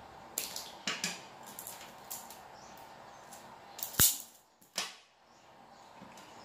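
Hand tools and electrical wire handled on a worktable: a series of small clicks, then a single sharp snap about four seconds in, the loudest sound, and a softer one just under a second later.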